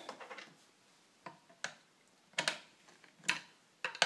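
A handful of short, sharp clicks, irregular and about half a second apart: a metal hex key working in the bolt of a 3D-printed PLA push block's handle, plastic parts clicking as the handle is loosened and tilted.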